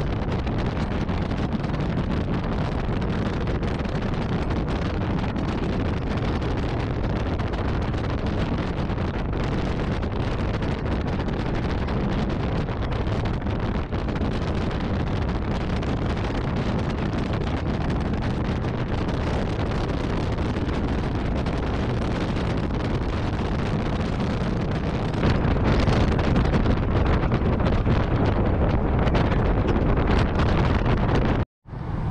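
Steady wind rush on the microphone with the drone of a motorcycle riding at road speed, growing louder near the end.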